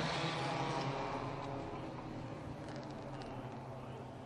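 Four-cylinder ministock race cars running at low revs as they slow under a caution, heard as a steady engine hum and track noise that fades gradually.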